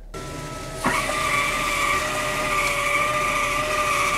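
A small motor running with a steady high whine over a rushing hiss, stepping up louder and slightly changing pitch about a second in.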